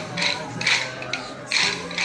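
Kolatam dance sticks struck together by a group of dancers, a clatter of many wooden clacks in a repeating rhythm about twice a second, over an accompanying melody.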